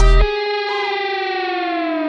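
The end of a hip-hop beat. The drums and bass cut off about a quarter second in, leaving a held, effects-heavy electric guitar note that slowly sinks in pitch.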